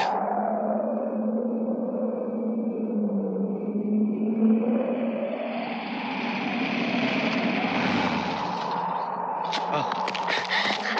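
Eerie film sound effect of howling wind: a slow, moaning tone that sinks for about four seconds and rises again, over a steady low hum and a hiss that swells near the end.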